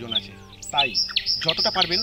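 A bird chirping: short, high calls repeated about four times a second in the second half.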